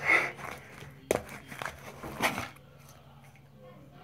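Fingers poking and squishing soft glitter slime in a plastic tub, with sharp little pops about a second in and again just after two seconds, then quieter handling as the slime is lifted and stretched.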